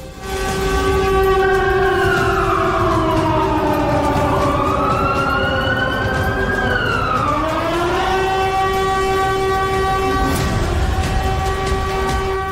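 Warning siren wailing over a steady held tone. Its pitch falls, rises for a couple of seconds, then falls again before it levels off.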